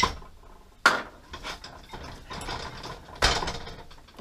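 Kitchenware being handled at a stove: three sharp clatters, at the start, about a second in and near the end, with a quicker ratcheting rattle between the last two.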